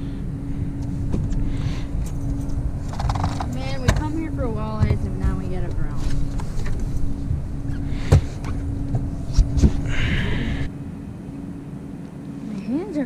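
A boat motor running with a steady hum over a low rumble, with a few sharp knocks in the second half.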